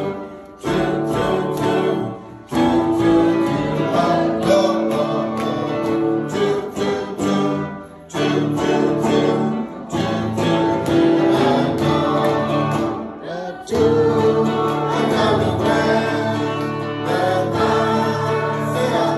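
A small group of adults singing a song together, phrase by phrase, with short pauses between phrases.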